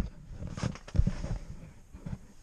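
Handling noise as the camera is moved: fabric rubbing over the microphone with low bumps, two of them sharper about half a second and a second in.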